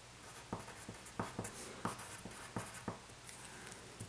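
Wooden pencil writing on paper: a run of quick scratches and about seven sharp taps as a word is written.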